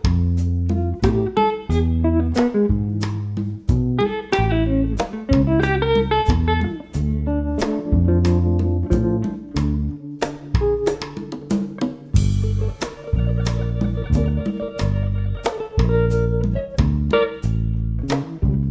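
Jazz trio playing: a hollow-body archtop electric guitar picks a melody over acoustic bass guitar and a drum kit, with a cymbal crash about twelve seconds in.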